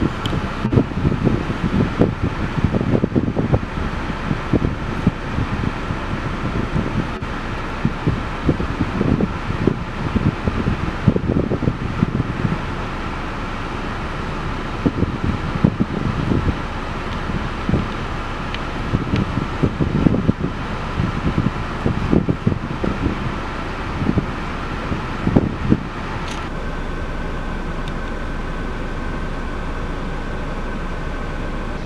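Wind buffeting the microphone in irregular low gusts over a steady mechanical hum. The pitch of the hum steps up slightly about three-quarters of the way through.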